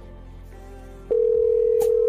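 A telephone tone: one steady, single-pitched beep that starts about a second in and holds loudly past the end, with a brief click partway through.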